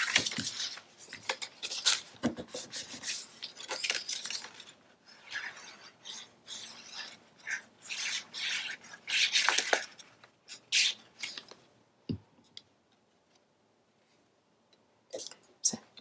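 Patterned paper and cardstock being handled, slid and rubbed down by hand on a cutting mat: bursts of rustling and scraping with a few sharp clicks. The sounds die away for a few seconds near the end.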